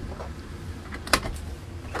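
A single sharp click about a second in, over a steady low rumble.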